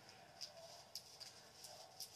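A few faint, light clicks from handling small plastic bead bottles and diamond painting beads while they are sorted.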